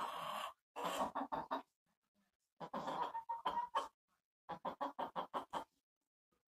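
Rhode Island Red hens clucking in runs of short, quick clucks, with a pause about two seconds in.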